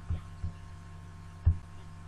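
Three soft mouse clicks, heard as short low thumps and the last the loudest, over a steady electrical mains hum from the recording setup.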